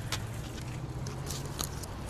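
Outdoor street background: a steady low rumble with a few faint, short clicks, and no voices.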